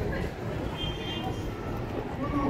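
Street ambience while walking among a crowd: indistinct voices of people nearby over a steady low rumble.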